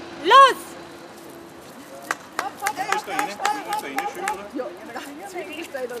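A single loud shout, the starting call, just after the start. From about two seconds in, a crowd chatting over many quick, sharp crackles and clicks of dry onion skins being torn off by hand.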